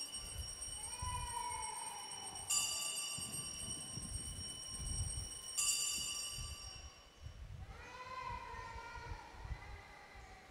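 Altar bell rung at the elevation of the chalice during the consecration: a bright metallic ring already sounding at the start, struck again twice about three seconds apart, each ring dying away slowly. Between the rings a falling, wavering call is heard twice.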